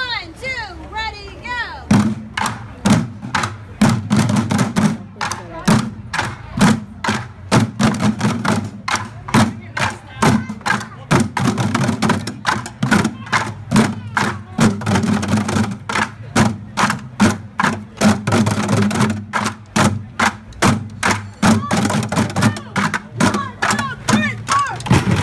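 Bucket drumming: a group of drummers striking plastic buckets with drumsticks in a rapid, steady rhythm, starting about two seconds in after a brief voice.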